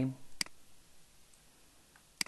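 A single sharp, brief computer mouse click about half a second in.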